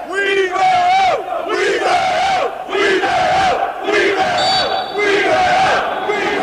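A group of men chanting together in a steady rhythm: about six loud shouts, roughly one a second, each falling in pitch at the end.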